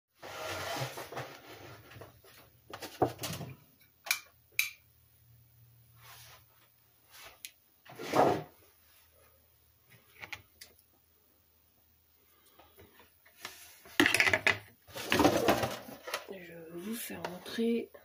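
Objects being handled on a kitchen counter: scattered knocks, clicks and short bursts of rustling. The loudest come about eight seconds in and again between about fourteen and sixteen seconds in. Near the end a plastic tub is being moved about.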